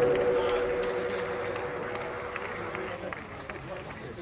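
The song's music cuts off. A held tone lingers and dies away over two or three seconds, under faint background voices, and the whole sound fades out steadily.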